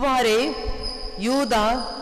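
A woman reading scripture aloud in Tamil through a microphone and loudspeakers, in two short phrases with a pause between them.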